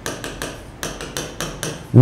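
A stylus tapping and ticking against the glass of a touchscreen display while handwriting, an uneven run of sharp clicks, several a second.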